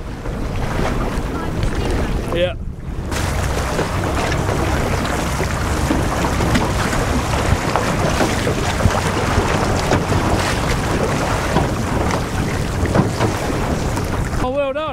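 Strong wind buffeting the microphone over a choppy sea, a loud steady rushing noise with water slapping beneath it. It breaks off briefly about two and a half seconds in.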